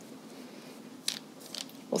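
Pastry brush swiping and dabbing melted butter onto raw pie dough: quiet, soft brushing with a few faint scratchy ticks about a second in.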